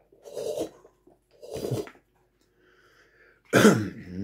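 A man coughing in short bursts about a second apart, the last and loudest one near the end.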